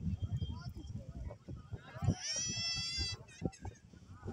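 Background voices talking, and about two seconds in a high, wavering call that lasts about a second.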